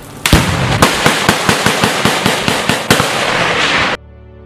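A rapid, irregular series of loud sharp bangs, about four a second, over a steady loud rushing noise, starting a quarter second in and cutting off suddenly at the end.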